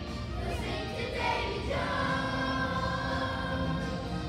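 Children's choir singing together, settling into a long held note a little under two seconds in.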